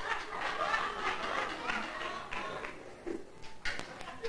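People's voices talking, with a few sharp knocks about three and a half seconds in.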